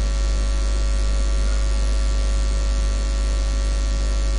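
Steady low electrical hum with a faint hiss above it.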